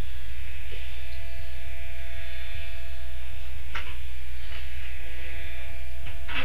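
Steady low electrical hum and buzz, unchanging throughout, of the kind mains hum makes in a camera's audio.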